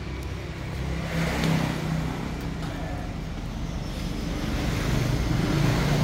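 Steady low hum of motor vehicle engines, growing louder near the end.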